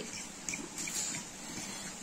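Metal spoon stirring a thick paste of spice powder and tomato sauce in a ceramic bowl: faint wet scraping with a few light clicks of the spoon against the bowl.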